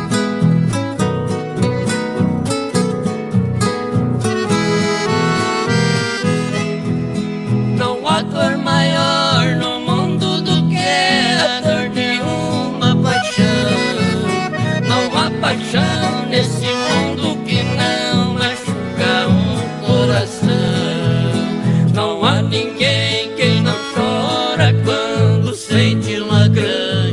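Live chamamé played on acoustic guitars and a piano accordion, with a steady strummed bass rhythm; about eight seconds in, a wavering, bending melody joins in, carried by harmonicas played into microphones.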